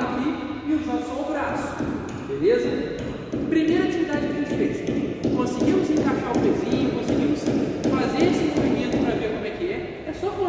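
A man talking: continuous speech with no other distinct sound.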